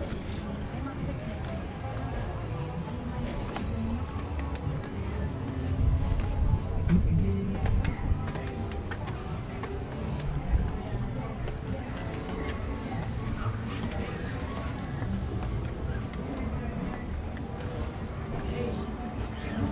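Footsteps walking along a concrete alley and up steps, over a low rumble on the microphone, with faint music and indistinct voices in the background.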